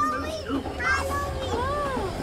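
A young child's voice calling out in short rising-and-falling sounds over the steady low rumble of a tractor engine.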